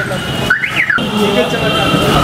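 A high electronic siren-like tone that glides up and then down in pitch about half a second in.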